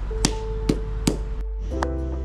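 Rubber mallet pounding a raw octopus on wet concrete to tenderize it: three sharp blows about half a second apart in the first half, the loudest sounds here, over background music.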